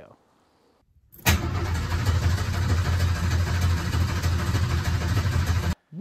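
A loud engine starts suddenly about a second in and runs steadily with a deep low rumble, then cuts off abruptly just before the end.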